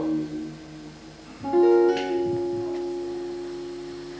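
Opera accompaniment on a plucked string instrument: a held note dies away, then about a second and a half in a chord is plucked and left to ring, slowly fading.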